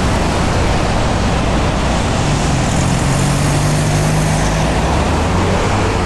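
Road traffic at a congested roundabout: cars passing close by with engine and tyre noise. A steady low engine drone stands out for a couple of seconds in the middle.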